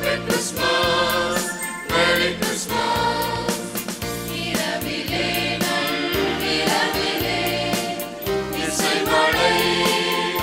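Mixed church choir singing a Tamil Christmas carol to electronic keyboard accompaniment with a steady percussion beat.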